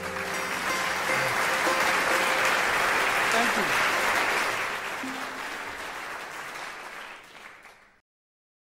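Audience applause at the end of a sarod and tabla piece. It swells over the first second, holds, then dies away and cuts off at the end. The last sarod note rings faintly under its start.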